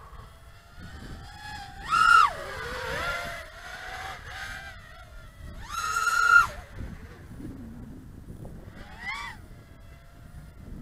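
HGLRC Sector 5 V3 FPV quadcopter's brushless motors, on a 6S battery, whining in flight as the throttle is worked. The pitch sweeps up and down in three surges: about two seconds in, the loudest about six seconds in, and a smaller one near the end.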